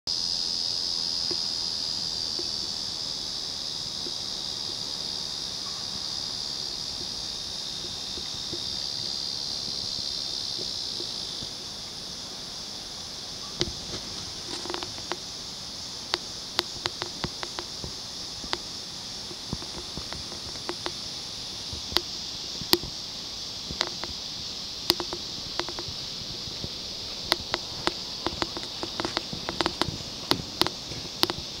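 A steady high-pitched buzz of insects, a little louder during the first ten seconds or so. Scattered sharp clicks and snaps come in from about halfway through.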